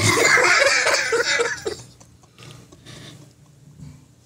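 A group of people laughing, loud and pulsing for about two seconds, then dying down to faint chuckles.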